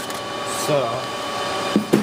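An AlphaServer 4100 power supply module being slid out of its sheet-metal power tray, ending in a short knock near the end, over a steady machine hum.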